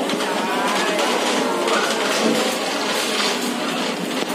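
Busy canteen din: background music with wavering pitched sounds over an indistinct hubbub in a large hall.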